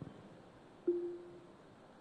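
Quiet room tone broken by one short, steady single-pitched tone lasting about half a second, about a second in.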